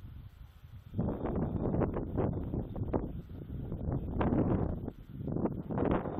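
Wind buffeting the microphone. It starts about a second in and rises and falls in irregular gusts.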